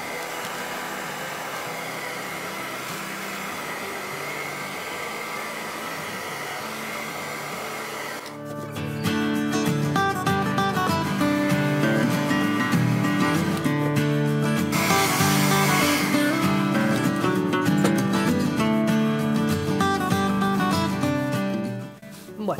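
Small handheld hair dryer running steadily, a smooth airflow hiss with a faint high whine. About eight seconds in it gives way to louder background music, which carries on to the end.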